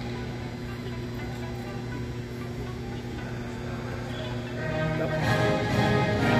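Anthem music played over a sports hall's loudspeakers, with sustained tones that grow louder and fuller about five seconds in.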